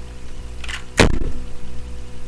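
A short rustle, then one sharp click about a second in, from the plastic parts of a Transformers Titans Return Overlord figure being handled.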